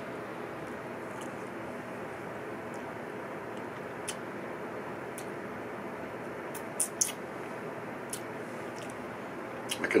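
Steady room hiss with a few faint, short clicks, a pair of them about seven seconds in. These are the small mouth and lip sounds of someone tasting a spoonful of sauce.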